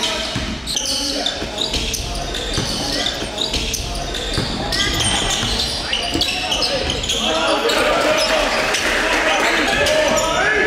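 Live basketball game sound in a reverberant indoor hall: a ball dribbled on a hardwood court, short high-pitched sneaker squeaks, and indistinct shouting from players and spectators.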